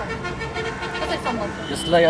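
Low background voices over steady street traffic noise, with a brief thin high tone near the end.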